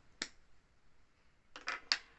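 A few light plastic clicks and taps from small cosmetic packaging being handled and set down on a wooden table: one click just after the start, then a quick run of three or four near the end.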